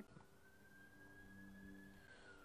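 Faint siren wailing in the background: one slow rise in pitch that begins to fall again near the end, over a low steady hum.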